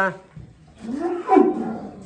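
A cow moos once: a single call of about a second, starting about a second in, that rises and then falls in pitch.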